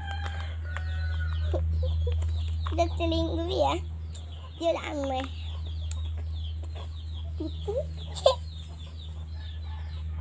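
Domestic chickens clucking, with several short calls strongest a few seconds in, over a steady low hum.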